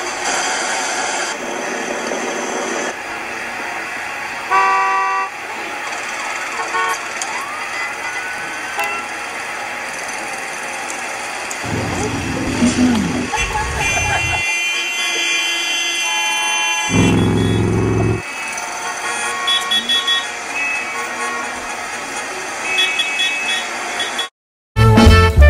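A car horn honking in traffic, with one short, loud blast about five seconds in and more honking later, over a steady wash of road noise and music.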